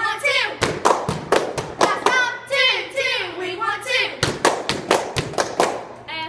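Girls chanting a cheer together, punctuated by a rhythm of sharp hand claps and a few thuds. The voices come in short shouted phrases near the start and again about two to four seconds in, with the claps running throughout.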